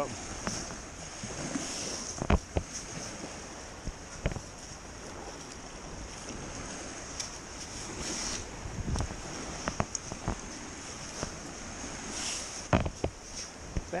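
Perforated metal sand scoop digging into wet sand, with a few short sharp knocks, to dig out a target the metal detector signalled. Surf washes and wind buffets the microphone throughout.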